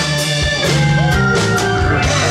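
Live blues-rock band playing, with a drum kit, electric guitar and a console organ holding sustained notes.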